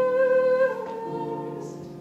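A woman's solo singing voice holding a long note over piano accompaniment, stepping down to a lower note about two-thirds of a second in and then fading.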